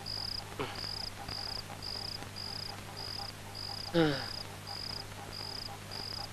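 Cricket chirping at an even pace, about two chirps a second, as night ambience over a low steady hum. About four seconds in, a person's short grunt, falling in pitch, is the loudest sound.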